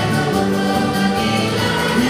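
Music with a group of voices singing together in held notes that change pitch every half second or so.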